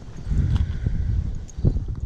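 Footsteps on grass with low rumbling on a body-worn microphone, and one sharper knock near the end.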